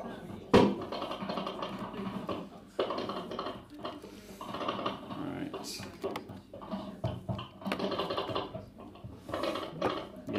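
Indistinct voices in a small room, with one sharp knock about half a second in.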